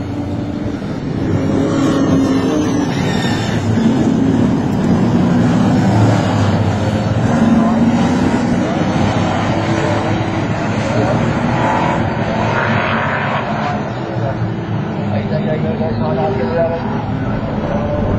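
Stock-car racing cars' engines running hard on a circuit, the pitch rising and falling as they accelerate and lift off.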